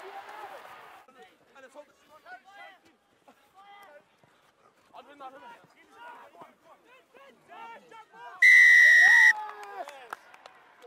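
Referee's whistle: one steady, shrill blast of about a second near the end. It is heard over faint, distant shouts of players.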